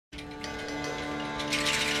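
A small acoustic band starting up: an accordion holding steady chords, with banjo and light drum taps, and a cymbal washing in about one and a half seconds in.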